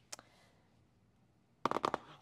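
A long cardboard kit box being grabbed and handled on a table: a light tap just after the start, then a brief, loud clatter of cardboard knocks and rustle near the end.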